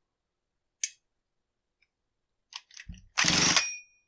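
A cordless impact driver runs in one short burst of rapid hammering, under a second long, near the end. It is undoing the clutch on a Husqvarna 455 Rancher chainsaw's crankshaft. A sharp click about a second in and a few light clicks come before it.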